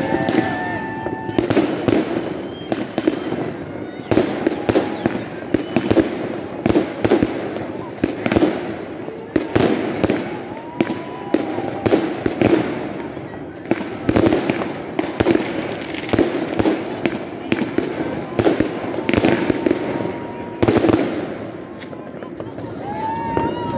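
Fireworks going off in a dense, irregular barrage, often several bangs a second, with rockets bursting overhead and launched from close by. People's voices carry on underneath.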